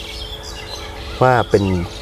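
Birds chirping in the background during a pause, with a man's voice coming back in a little over a second in.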